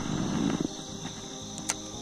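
Spinning rod cast: a short rush of air as the rod is swung, then a single sharp click near the end as the spinning reel's bail snaps shut. Insects chirr steadily throughout.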